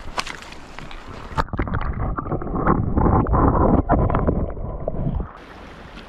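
Stream water sloshing and splashing around a hand as a small brook trout is let go into the creek, with a few sharp knocks. From about a second and a half in the sound turns muffled and louder, a heavy rumbling slosh, then falls away to a quieter stream hiss near the end.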